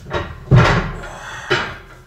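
Two knocks about a second apart, the first the louder, from a bench-press machine loaded with 150 kg as its bar is pressed and lowered.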